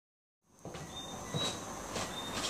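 A few soft footsteps of shoes on a hard wood-look floor over steady low background noise, starting about half a second in.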